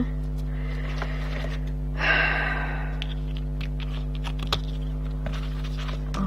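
Steady electrical mains hum throughout, with a short breathy noise about two seconds in and a few light clicks as the card and ribbon are handled.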